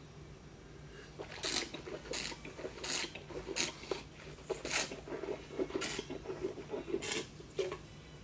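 A person sipping red dessert wine and sucking air through it in the mouth to taste it: a series of about eight short slurps, irregularly spaced.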